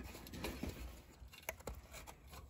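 Faint small clicks and rubbing of an oxygen sensor's plastic wiring connector and its wire being worked into position by hand, a few scattered ticks.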